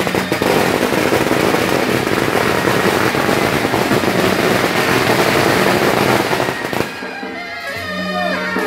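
A long string of firecrackers going off in dense, rapid crackling for about seven seconds, then stopping abruptly. Traditional music comes through clearly near the end.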